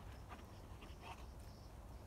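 A dog sniffing at the ground: a few short, faint sniffs over a low steady rumble.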